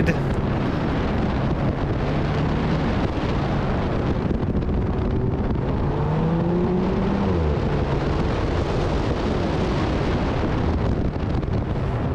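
Alfa Romeo 4C's turbocharged four-cylinder engine running hard under heavy wind rush on the outside-mounted microphone during a fast autocross run. The engine note climbs about halfway through and drops a little after.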